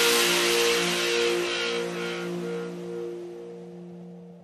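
Ending of an electronic dubstep track: the beat has dropped out, leaving a held synth chord with a hissing wash that fades away.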